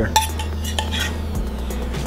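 A metal serving spoon clinking against a bowl and a ceramic plate as curry is spooned out: a couple of sharp clinks near the start and a lighter one about a second in, over a steady low hum.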